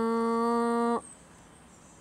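A person's voice holding one steady hummed note, which cuts off about a second in.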